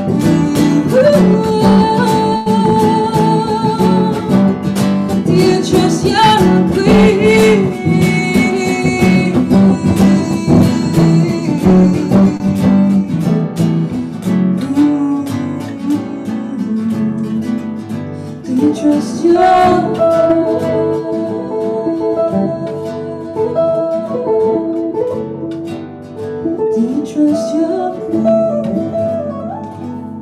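A live duo song: a semi-hollow electric guitar and an acoustic guitar played together while a woman sings. It grows quieter over the last few seconds as the song closes.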